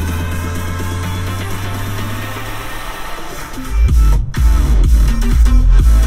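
Electronic dance music playing through the 2022 Toyota Tacoma's seven-speaker JBL audio system, heard inside the cab. Held low bass notes fill the first half, then a heavy bass beat drops in about two-thirds of the way through, with a brief break just after.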